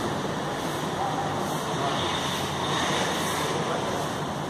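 Steady urban traffic noise: a continuous, even hum of road traffic.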